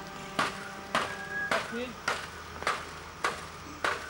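Steady hammering on a building site: seven sharp, evenly spaced strikes, a little under two a second.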